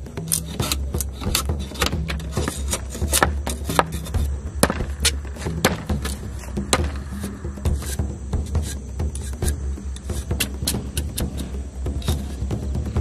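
Machete blade shaving and chopping the rind off a sugarcane stalk: many quick, sharp scraping cuts, several a second, over background music.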